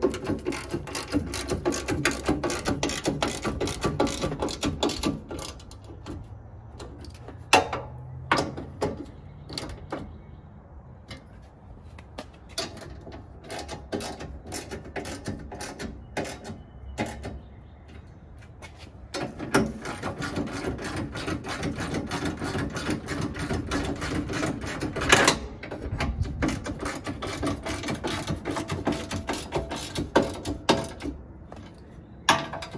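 Hand ratchet wrench clicking fast and evenly as the front bumper's mounting bolts are tightened, in two long spells with a few separate knocks of tool and metal between them.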